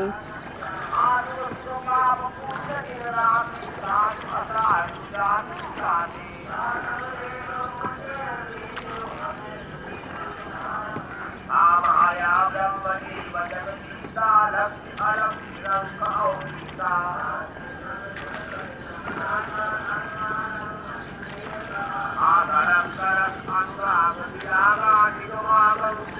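Indistinct human voices in short broken phrases, with no words that can be made out, over a steady background hiss.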